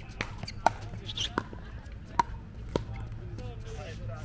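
Pickleball rally: paddles hitting the hard plastic ball, five sharp pops in under three seconds.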